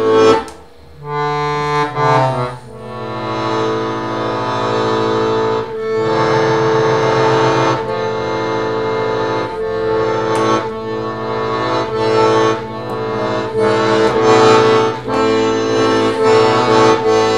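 Piano accordion played solo: an improvised melody on the keyboard over a held note and bass, with a short break about a second in before the playing resumes.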